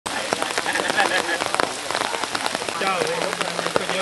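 Steady rain falling, a dense hiss with many sharp drop hits.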